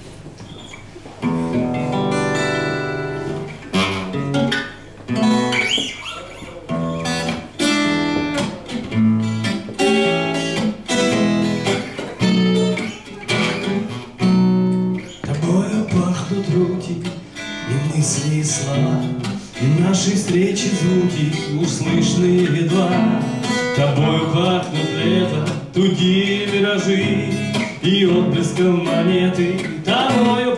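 Acoustic guitar played in a steady rhythm, starting about a second in after a short quiet pause.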